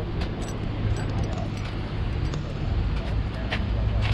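A car engine idling steadily, a low hum under outdoor noise, with a few light clicks.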